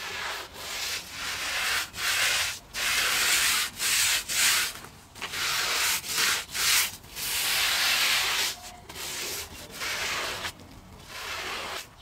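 A wool rug being scrubbed by hand: a run of rough back-and-forth scrubbing strokes, about one a second, loudest in the middle and softer near the end.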